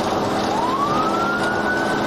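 Police car siren wailing: a single tone rises in pitch from about half a second in and levels off high near the end, over the steady road noise of the moving patrol car.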